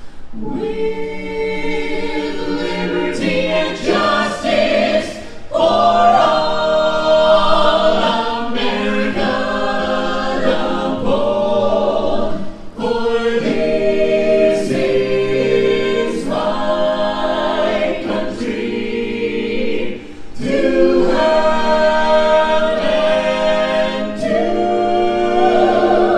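Mixed men's and women's a cappella ensemble singing in multi-part harmony into microphones, amplified through stage speakers, with no instruments. The singing pauses briefly between phrases twice.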